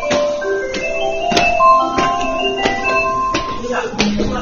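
Railway station departure melody: a tune of struck, bell-like notes, several a second, playing over the platform.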